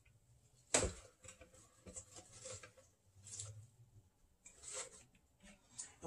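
A single knock about a second in, then faint, intermittent rustling and rubbing as handfuls of fresh spinach leaves are packed into a blender jar.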